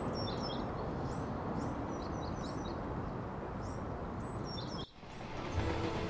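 Small birds chirping in short, repeated calls over a steady outdoor background hiss. The ambience cuts off sharply near the end and gives way to a lower, rumbling hum.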